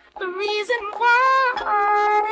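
A woman's sung R&B vocal line played through the DJ's sound system, starting just after a brief gap, with the song's bass beat coming in about one and a half seconds in.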